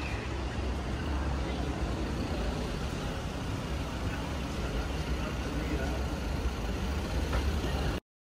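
Busy city street ambience: a steady low rumble of road traffic with passers-by talking.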